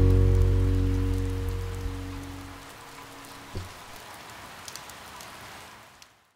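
The last strummed acoustic guitar chord rings and fades out over about three seconds. Underneath it, rain keeps falling steadily. A soft thump comes about three and a half seconds in.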